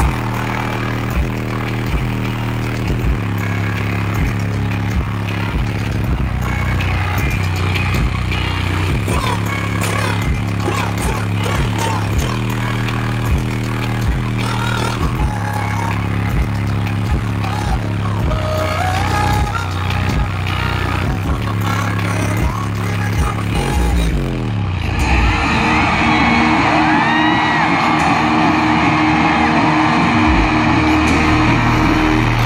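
Live band music through an arena sound system: an instrumental section with a steady kick-drum beat and deep held bass notes, without vocals. Near the end the bass slides down in pitch and the beat stops, leaving a sustained low drone with higher warbling sounds over it.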